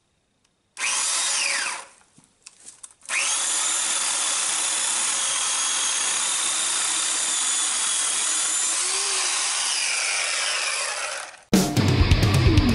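Small chainsaw cutting a tree branch: a short burst about a second in that winds down with a falling whine, then from about three seconds in it runs steadily through the wood with a constant high whine for about eight seconds before stopping.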